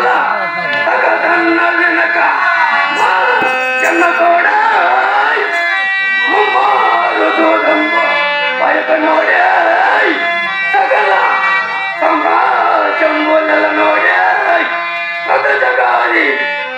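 A voice singing in phrases of a few seconds each over the steady held chords of a harmonium, as in the sung verses of a Telugu folk stage play.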